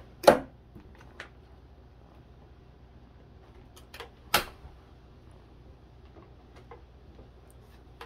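Plastic pages of a ring binder for trading cards being handled and flipped: a loud slap of a page laid over just after the start, a smaller tap about a second in, and two sharper clacks about four seconds in, with faint rustling between.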